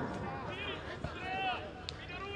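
Faint shouts and calls of players' voices carrying across an open football pitch, in short bursts, with a single sharp click near the end.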